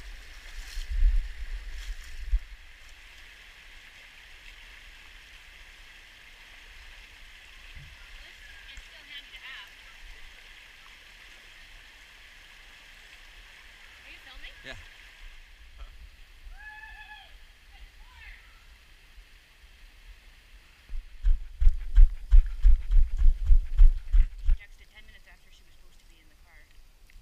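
Shallow creek water rushing over rocks, a steady hiss that drops away about fifteen seconds in. Near the end comes a quick run of heavy thumps, about two or three a second.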